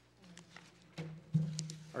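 Sheets of paper being handled and turned on a wooden lectern close to its microphone: a few soft knocks and rustles, the loudest about one and a half seconds in, with a low steady hum coming in about a second in.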